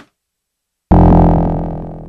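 Elektron Machinedrum playing a low, buzzy FM synth tone with many overtones. It starts suddenly about a second in and fades away slowly, growing duller as it fades.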